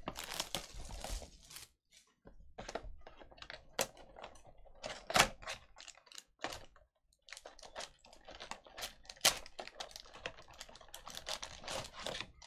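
Plastic shrink-wrap crackling as it is torn off a cardboard trading-card box, then the lid flap opened and the foil packs rustling as they are pulled out. An uneven run of sharp crackles and clicks with two brief pauses.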